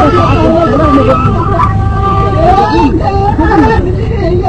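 Traditional Algerian rekrouki music: a gasba, the end-blown reed flute, holds long, gliding notes while a man's voice runs through ornamented, bending melodic phrases beneath it. A steady low hum sits underneath.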